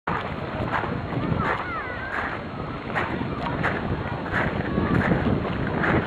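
Wind rumbling on the microphone, with faint distant voices and a few short high calls about one and a half seconds in.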